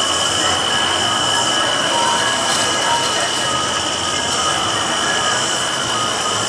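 Cicada chorus played as a sound effect in the show's soundtrack: a steady, high-pitched buzz that holds one pitch over a dense hiss.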